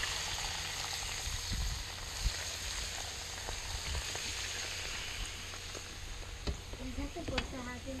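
Hot peanut oil poured over a mullet and its chopped green onions, Chinese parsley and watercress, sizzling with small crackles, the hiss slowly dying down.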